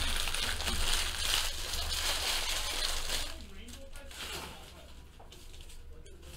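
Foil trading-card pack wrappers crinkling and tearing as packs are opened by hand, dense for about three seconds and then dying down to faint handling.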